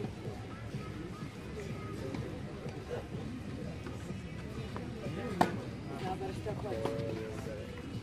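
A tennis ball struck once by a racket: a single sharp pop about five seconds in, over background voices and music.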